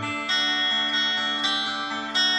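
Glarry GTL semi-hollow telecaster-style electric guitar strummed through a small tube amplifier: two chords, each left ringing, about a third of a second and a second and a half in.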